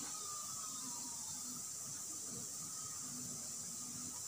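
Steady low background hiss of a quiet room, with a faint thin tone that slides slightly down in pitch during the first couple of seconds.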